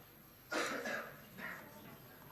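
A person coughing in the room: one sharp burst about half a second in, followed by two softer ones.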